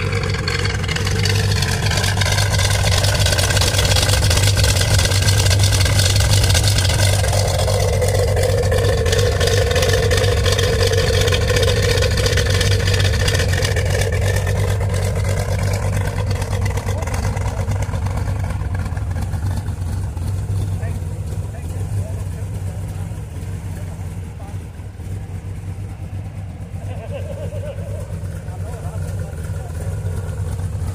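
Chevrolet Corvette C3 V8 idling through its dual exhausts, a steady deep low rumble that is loudest in the first half and eases off later.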